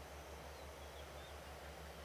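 Faint room tone: a steady low hum with a slight regular pulse under a quiet, even hiss.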